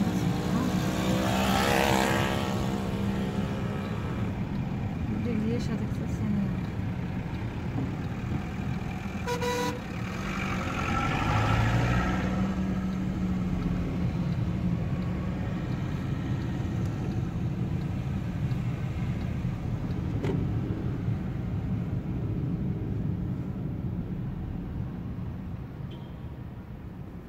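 Small car's engine and road noise heard from inside the cabin while driving slowly through town traffic, with a swell as a large bus passes alongside near the start. A short beep, like a car horn toot, about nine and a half seconds in.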